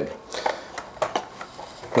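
Faint clicks of small plastic test tubes and stoppers being handled, after a brief soft hiss of breath.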